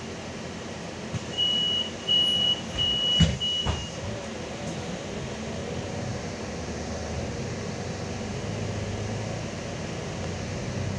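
Solaris Urbino 18 articulated bus running along a snowy road, heard from inside at the front, with steady running noise. About a second in, a high electronic beep sounds four times, with two sharp knocks near the last beeps; the low running sound swells near the end.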